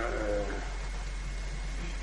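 A man's voice draws out a low, slightly falling syllable for about half a second. Then only the steady hiss and hum of an old tape recording remains.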